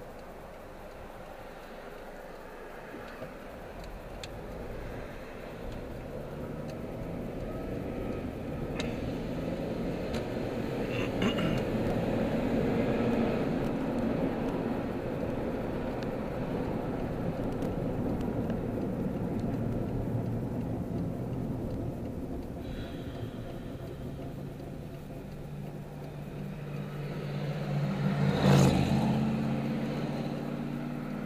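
Car cabin noise while driving: engine and road noise that grows louder over the first several seconds as the car picks up speed, then holds steady. Near the end a lower engine hum comes in, with one short loud rush, the loudest moment, shortly before the end.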